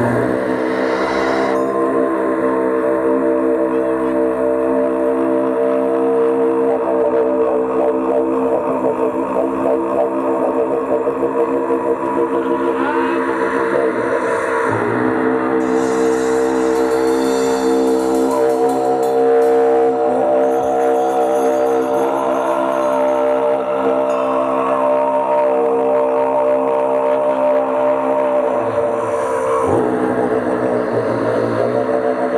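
Didgeridoo droning with a steady stack of overtones. Its tone shifts about halfway through with swooping vocal glides, while a drum kit's cymbals shimmer behind it.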